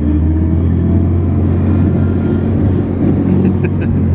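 Old open-topped army jeep's engine running steadily as it drives along, a loud low drone heard from inside the open vehicle.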